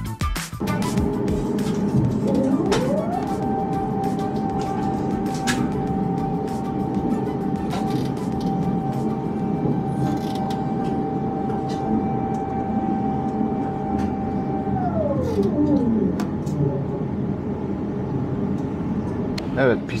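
Airbus A350 cabin noise while taxiing: a steady engine and airflow hum, with a tone that rises in pitch about two seconds in, holds steady, and falls away about fifteen seconds in. Music and a voice are mixed in faintly.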